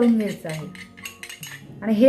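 A voice trails off, then a steel spoon clinks lightly a few times against a small glass bowl.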